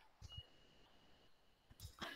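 Near silence: room tone, with a couple of very faint soft knocks.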